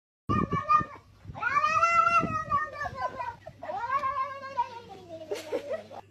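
Domestic cat yowling: one short meow, then two long drawn-out calls that rise and then fall in pitch, the last one sliding down low at its end.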